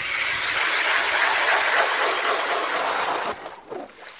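StrikeMaster Lithium 40V electric ice auger boring a hole through about ten inches of lake ice: a loud, steady cutting noise from the blades chewing through the ice, which stops a little after three seconds in.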